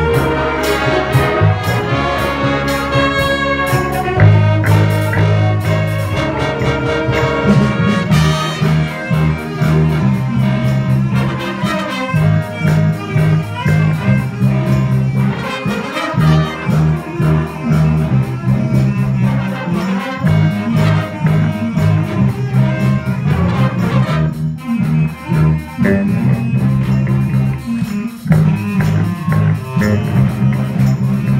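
Student jazz big band playing a pop-song arrangement: saxophones, trumpets and trombones over a steady bass line and drums, with the horns strongest in the first few seconds.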